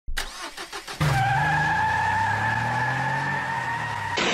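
Car engine sound effect: from about a second in, a car engine runs loud and steady with a high whine over it. Before that there is a short choppy sound.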